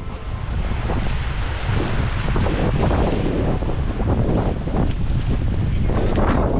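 Wind buffeting the microphone, with small waves lapping at the water's edge underneath.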